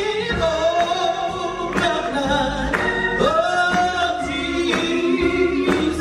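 Gospel song: voices hold long, sliding notes over bass and instrumental accompaniment, with a steady beat about once a second.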